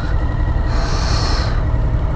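Motorcycle engine idling with a steady low rumble, and a brief hiss of a little under a second near the middle.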